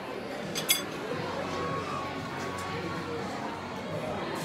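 Restaurant dining-room noise with a low murmur of diners' voices, and a sharp, ringing double clink of tableware a little over half a second in.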